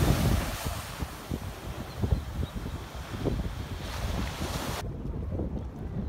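Small ocean waves breaking and washing up a sandy beach: a steady hiss of surf that cuts off abruptly about five seconds in. Wind buffets the microphone throughout.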